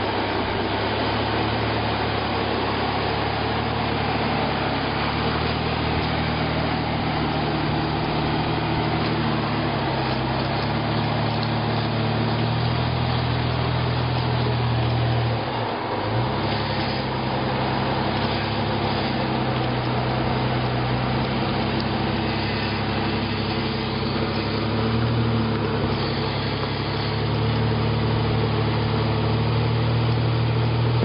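Jeep Wrangler JK Unlimited's engine running steadily at low revs as it crawls up a rock ledge, its note rising and falling slightly with the throttle. There is a brief break in the sound about halfway through.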